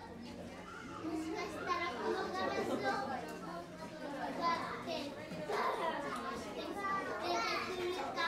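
Bystanders' chatter: several people talking at once, children's voices among them.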